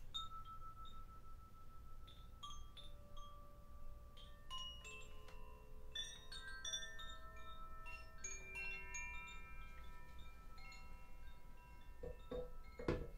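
A hand-held chime shaken and swaying, giving many clear ringing tones at different pitches that overlap and linger. It starts sparse, grows denser through the middle, and has light tinkling clicks on top.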